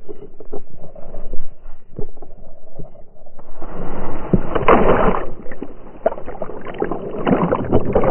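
Slowed-down sound of a dog plunging into a lake, heard from a camera strapped to its back: scattered knocks and rustling at first, then from about three and a half seconds a dense rush of splashing water, swelling again near the end.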